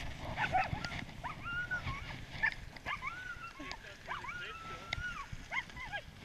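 Sled dogs whining and yipping: a string of high, arching whines, some held for about a second, with short yips between them.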